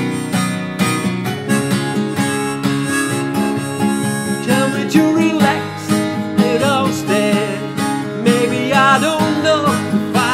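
Steel-string acoustic guitar, capoed, strummed steadily in a song's instrumental break. A wavering melody line rises and falls over the strumming from about halfway through.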